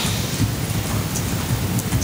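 Steady low rumbling noise with no speech.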